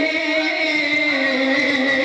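A man's voice holding one long chanted note into a microphone, the pitch dipping slightly about a second in.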